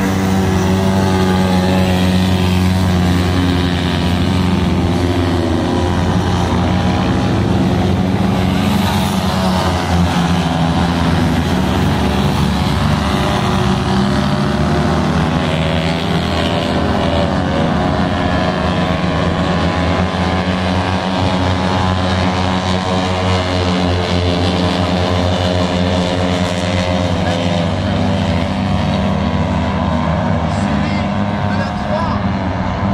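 Citroën 2CV air-cooled flat-twin engines of racing amphibious craft running steadily at speed, their pitch wavering now and then as they lap the water.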